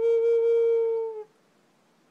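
Native American flute in G minor by Butch Hall holding one long note that dips slightly in pitch as it ends about a second in, followed by near silence.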